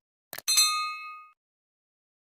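A quick mouse-click sound effect followed by a bright, bell-like ding that rings for under a second and fades out: the subscribe-button and notification-bell sound effect of an animated end screen.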